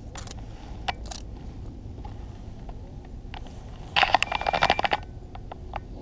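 Handling clatter of a metal lip-grip fish scale being clamped onto a largemouth bass's jaw and lifted: a few scattered clicks, then a dense burst of rattling clicks lasting about a second, about four seconds in, over a steady low rumble.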